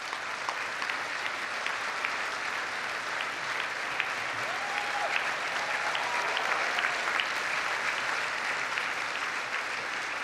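A large seated audience applauding steadily, many hands clapping at once, swelling slightly midway and then easing a little.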